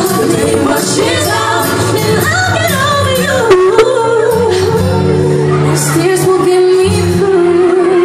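Live pop music: female vocalists singing a winding melody over a backing track, settling into a steadier held note over a sustained chord from about halfway through.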